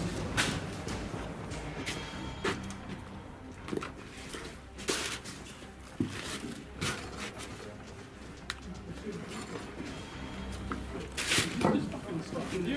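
Scattered sharp knocks and clicks a second or two apart over a low steady rumble, with a short burst of voices near the end.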